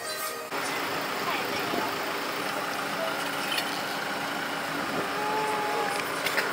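Street ambience: steady traffic noise with indistinct voices in the background, the sound stepping up abruptly about half a second in.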